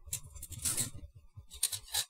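Plastic model-kit parts runners being handled and shuffled on a stack, giving three short rustling, scraping bursts.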